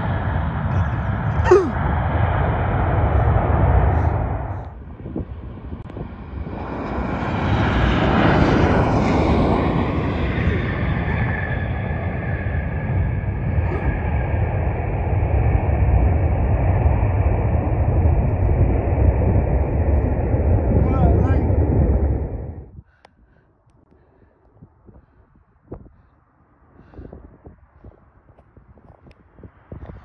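Jet airliner engines at high power on a takeoff, a steady roar with a high whine. It comes in two stretches, both cutting off abruptly. The longer one stops suddenly about 23 s in, and the last seven seconds are much quieter.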